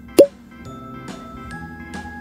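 A single short, loud plop or pop sound effect about a quarter second in, then soft background music with held notes.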